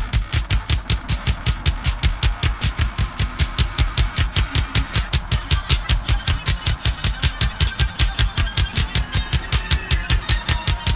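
Post-punk band music with funk and free-jazz leanings, from a 1980 album: a fast, even pulse of low thumps, about four to five a second, under busy higher instruments.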